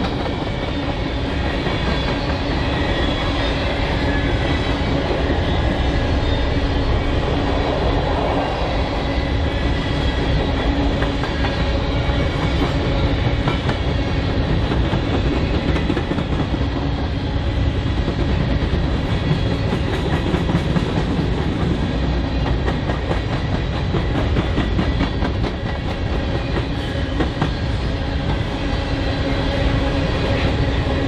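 BNSF covered hopper cars of a grain train rolling steadily past: continuous rumble of steel wheels on rail with clickety-clack over the joints, and a few steady ringing tones over the noise.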